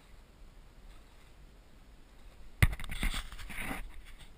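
Hooked barramundi splashing at the surface. Quiet until about two-thirds of the way in, then a sharp knock and about a second of splashing and rattling, with water spraying over the camera.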